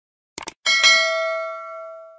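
Subscribe-button animation sound effect: a quick double mouse click, then a bright notification-bell ding that rings out and fades away over about a second and a half.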